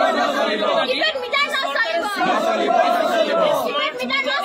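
A crowd of protesters shouting slogans together, many voices at once with long drawn-out shouted notes.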